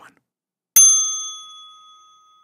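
A single bright bell-like ding from a notification-bell sound effect, starting abruptly about three-quarters of a second in and ringing out, fading over about a second and a half.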